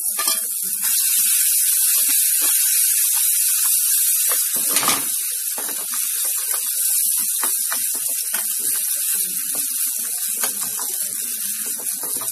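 Grated ginger sizzling in hot oil with cumin seeds in a small steel tadka pan, starting as it is tipped in: the tempering stage of the stuffing. A steel spoon stirs and scrapes the pan with scattered clicks, and one sharper knock about five seconds in.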